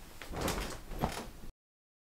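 Faint room noise with two soft knocks, about half a second and a second in, then the sound cuts off suddenly to dead silence.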